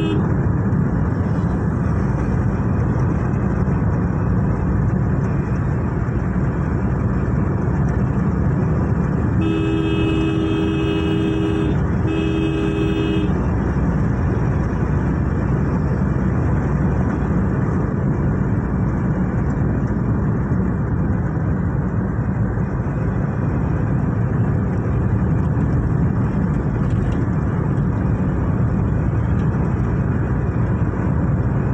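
Steady road and engine noise heard from inside a moving vehicle, with two blasts of a two-tone vehicle horn about ten seconds in. The first blast lasts about two seconds and the second just over a second.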